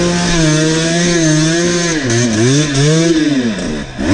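Enduro dirt bike engine heard close up from on board while riding a trail: held at steady revs for about two seconds, then the throttle is rolled off and on several times so the note dips and rises repeatedly.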